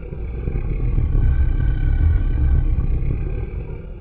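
A deep rumbling swell that builds to a peak around the middle and then fades, with faint steady high tones over it: an edited sound effect under the show's animated title cards.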